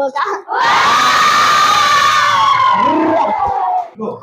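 A group of schoolchildren cheering and shouting together in one long, loud cry that starts about half a second in, its pitch slowly falling, and breaks off just before the end.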